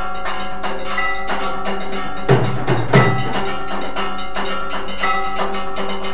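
Temple aarti bells ringing rapidly and continuously with percussion, the strikes overlapping into a lasting metallic ring. A few deeper, louder drum strokes come between two and three seconds in.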